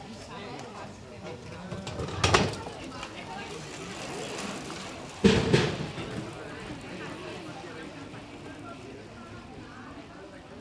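Indistinct voices of bystanders outdoors, with two brief loud bursts about two seconds and five seconds in.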